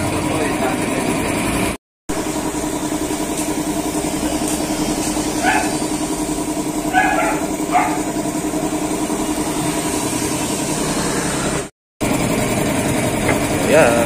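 An engine idling with a steady hum, heard as workshop background, with a few short distant calls in the middle. The sound drops out to silence twice for a moment at edit cuts.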